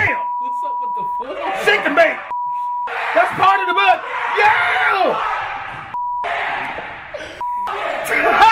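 Censor bleeps: a steady single-pitch beep cuts in about five times over excited male speech, blanking out the swearing. The first bleep lasts about a second and the later ones are short.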